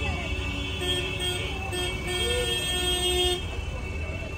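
Classic cars running as they drive slowly past in a parade. A car horn sounds a steady note for a couple of seconds and cuts off shortly before the end. Voices can be heard among the onlookers.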